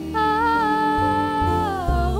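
Female voice holding a wordless, hummed or 'ooh' note over piano and double bass accompaniment; the note wavers slightly and slides down in pitch near the end.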